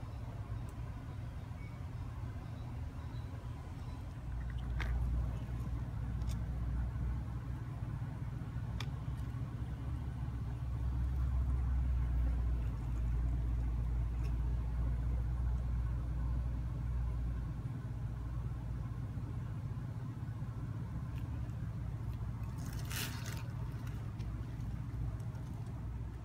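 Low, steady engine rumble of road-paving machinery working nearby, swelling for several seconds in the middle, with a few faint clicks.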